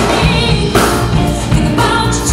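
Live band playing a soul number: a woman singing lead over bass, electric guitar, piano and drums.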